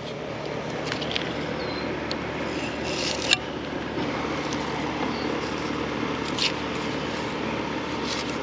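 Flexible fillet knife scraping and slicing through shark meat as the fillet is carved off the cartilage, a few short scrapes with a sharp click about three seconds in, over a steady background hum.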